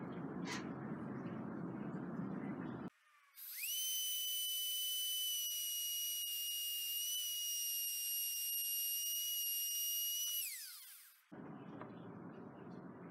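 Plunge router mounted under a router table spins up about three seconds in, runs with a steady high-pitched whine while a keyhole bit cuts a slot in a small pine piece, then winds down with falling pitch near the end. Before it starts there is only a steady low background noise.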